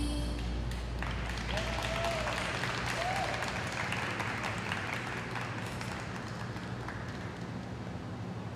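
Program music cuts off right at the start, then a small audience claps for several seconds, the applause thinning and fading toward the end. There are a couple of short cheers early in the clapping.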